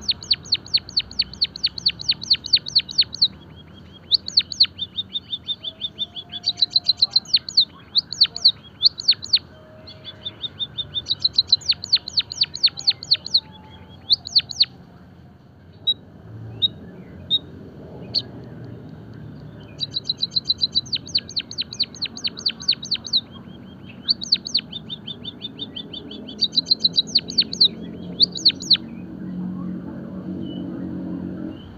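White-headed munia singing: bouts of rapid, high, repeated notes mixed with sharp downward-sliding strokes, with a pause of a few seconds about halfway through.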